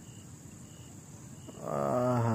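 A cow lowing: one low, drawn-out moo that swells in about one and a half seconds in and is still sounding at the end, over faint regular insect chirps.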